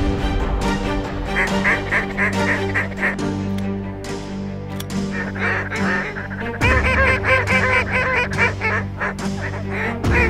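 A large flock of geese calling overhead, many honks overlapping into a din that grows louder about two-thirds of the way through, over a music bed of sustained low notes.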